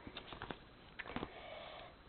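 Quiet handling of a sticker sheet and planner paper, with a few faint light ticks and rustles as a small sticker is peeled off and pressed down.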